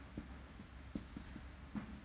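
Faint, soft taps of a marker pen writing on a whiteboard, several scattered through the two seconds, over a steady low hum.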